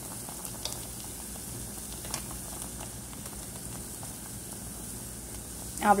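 Goat-leg soup bubbling in an open aluminium pressure cooker: a steady low sizzle with a few small pops.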